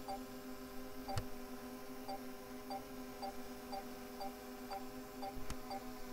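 DJI Mini 3 Pro drone hovering a few feet away, its propellers giving a steady hum. Faint beeps about twice a second from the remote controller, an obstacle-proximity warning because the drone is close to a person.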